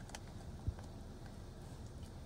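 Quiet handling of a child's car-seat harness buckle, with one soft low thump about two-thirds of a second in, over a low steady rumble.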